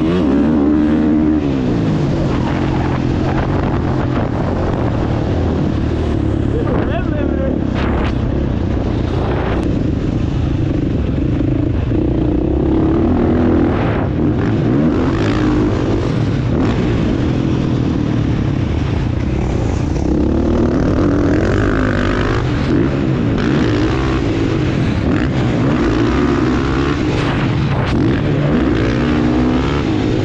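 Dirt bike engine ridden hard, its pitch rising and falling again and again with throttle and gear changes through the lap.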